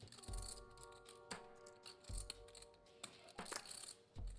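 Poker chips clicking as they are handled at the table, many short light clicks over a soft held background music chord.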